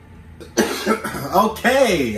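A cough about half a second in, followed by a person's voice rising and falling.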